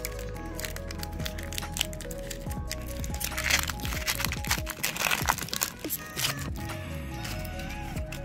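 Foil Pokémon booster pack wrapper crinkling and crackling as it is torn open and handled, thickest about halfway through, over background music.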